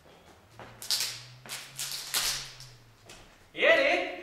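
A few short hissing sounds, then about three and a half seconds in a man's voice calls out loudly without words as a ring juggling run ends.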